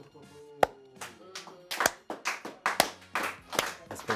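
A person clapping hands in a quick rhythm, starting about two seconds in, over faint music.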